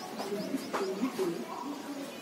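Birds calling: a quick run of short, high, rising chirps through about the first second, with lower calls underneath.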